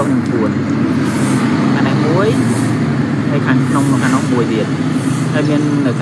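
A voice heard in short phrases over a steady low hum.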